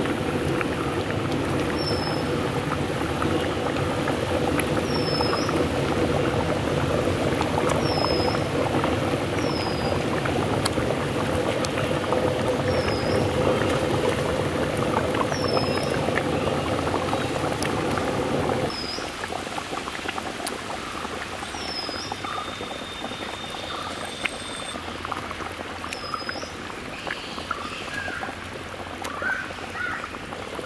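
Thick fish curry simmering in a large aluminium pot, bubbling and popping steadily over a low rushing background that drops noticeably in level about two-thirds of the way through. Short high chirps recur every second or two above it.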